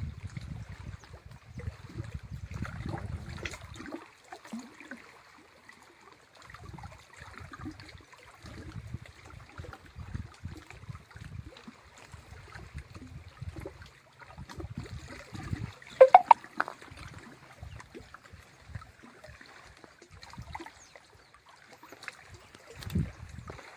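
Small waves lapping and splashing at the water's edge of a lake, with gusts of wind buffeting the microphone on and off. About two-thirds of the way through there is a brief, much louder sound.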